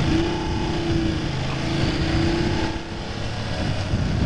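Motorcycle engine accelerating through the gears: its note climbs, breaks at a gear change about a second and a half in, climbs again and eases off near the end, over a steady low rumble of wind and road noise on the rider's camera microphone.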